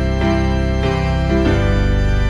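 Organ-voiced keyboard playing sustained hymn chords, moving to a new chord several times.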